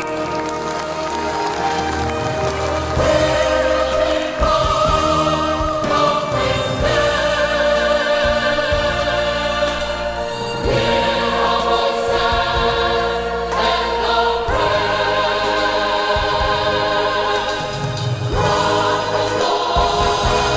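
A youth choir singing in parts, with long held notes and chords that change every few seconds.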